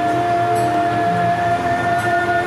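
Two haegeum, Korean two-string bowed fiddles, playing slow music: one long high note held steady while lower notes change beneath it.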